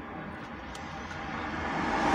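A passing car, its engine and tyre noise rising as it approaches and goes by, heard muffled from inside a stationary car.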